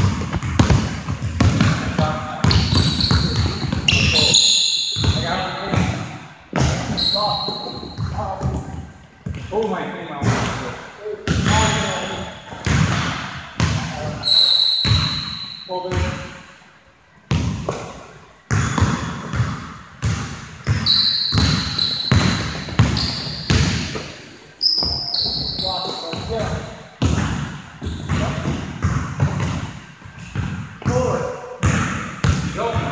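Basketball dribbling and bouncing on a hardwood gym floor, sharp repeated bounces echoing in the hall, mixed with short high sneaker squeaks from players moving on the court.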